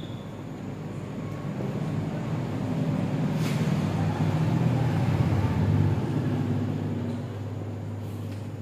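Low rumble of a passing motor vehicle that swells to its loudest about five to six seconds in and then eases off.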